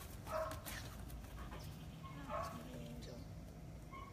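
A dog whining faintly: a few short, high whimpers spread through a few seconds.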